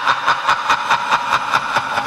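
A rapid, even mechanical clatter of about five clicks a second.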